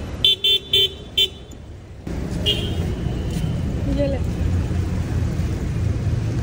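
Car horn tooted four times in quick succession, short sharp beeps, followed by a steady low rumble of traffic.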